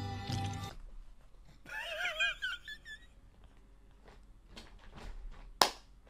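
A man's high-pitched, squeaky wheezing laugh about two seconds in. Then come a few soft knocks and a sharp slap or clap near the end, as he breaks up laughing.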